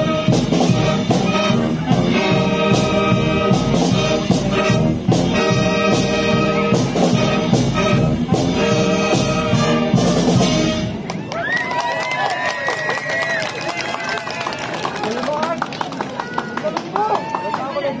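Live wind band playing, brass over drums, until the music stops about eleven seconds in; then the voices of a crowd talking and calling out.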